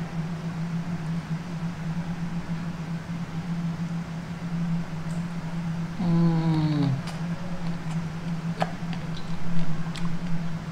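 Eating an almond-coated chocolate ice cream bar: a short falling "mmm" from the eater about six seconds in, then a few crisp clicks and cracks of the chocolate-and-almond shell being bitten and chewed near the end. A steady low hum runs underneath.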